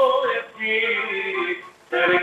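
Live Cretan folk music: a bowed Cretan lyra and a plucked lute play together with a man singing. The phrase breaks off briefly just before the end.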